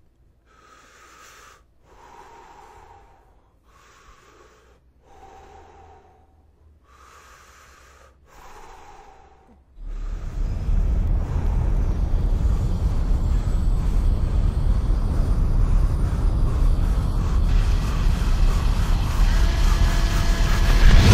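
Faint, slow breathing in and out through breathing masks: three breaths, each with a thin tone, the in-breath higher than the out-breath. About halfway through, a loud steady spacecraft rumble starts and carries on.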